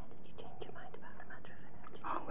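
Low, whispered conversation between two people, faint and off-microphone, with a few small clicks.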